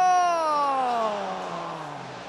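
A football commentator's long drawn-out cry, starting high and sliding steadily down in pitch as it fades over about two seconds, in reaction to a missed scoring chance.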